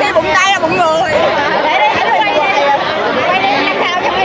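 Teenage girls chatting, their voices overlapping, with the babble of a seated crowd behind.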